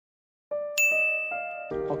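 A short chime jingle: a few bell-like notes struck one after another at different pitches, each ringing on, starting about half a second in. Background music and a man's voice come in near the end.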